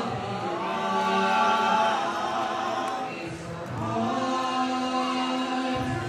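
A small vocal group singing a cappella in close harmony, holding long chords with no instruments. The chords swell in the first couple of seconds, ease off a little after the middle, then build again.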